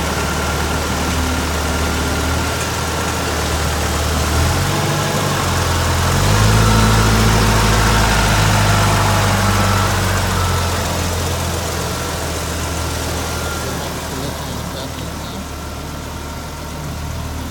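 2006 Ford F-150's gasoline engine idling. It rises in speed about five seconds in, holds higher for about four seconds, then settles back to a steady idle.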